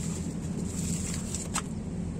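Steady low outdoor hum with a faint high hiss, broken by one sharp click about one and a half seconds in.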